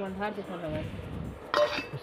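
A steel plate set down as a lid on a steel cooking pot, clinking once about one and a half seconds in, with a person's voice before it.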